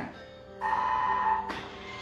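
A single steady electronic beep, held for about a second, starting about half a second in.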